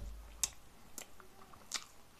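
A person biting into and chewing a cheeseburger stacked with a chicken mayo sandwich: a soft bump at the start, then a few sharp, wet mouth clicks about half a second apart.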